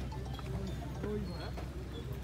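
Background chatter of scattered voices around tethered cattle, over a steady low hum.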